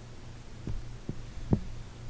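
A steady low electrical hum on the recording, with three soft low thumps about a second in, the last one the loudest.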